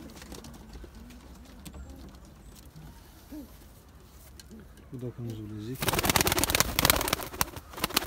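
Domestic pigeon's wings flapping in a loud flurry of rapid wingbeats, lasting about two seconds and starting near six seconds in, as a pigeon flies up close by. Before it, faint low cooing from the pigeons on the ground.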